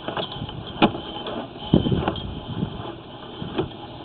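Sewer inspection camera's push cable being fed down the line: irregular rubbing and clatter, with sharper knocks about a second in, around two seconds and near the end.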